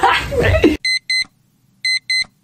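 A man laughing loudly, cut off abruptly less than a second in. Then two pairs of short, high electronic beeps, about a second apart, with dead silence between them.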